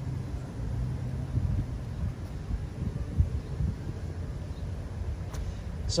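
Low, steady vehicle engine rumble that grows rougher and less even after about two seconds, with one sharp knock a little after three seconds.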